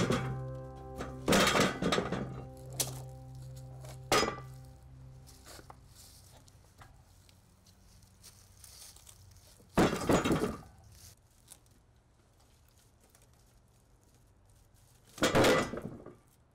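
Heavy freshly sawn walnut slabs thudding as they are slid off the sawmill bed and set down on the ground: several thuds in the first few seconds, another cluster about ten seconds in and one near the end. Background music fades out over the first few seconds.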